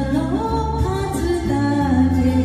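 A woman singing a Japanese enka ballad into a handheld microphone over a karaoke backing track, her voice carrying the melody with sustained, gliding notes over a steady low accompaniment.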